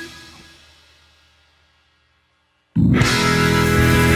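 Blues-rock band music dies away over about two seconds into a short silence, then the full band with electric guitar comes back in suddenly near the end.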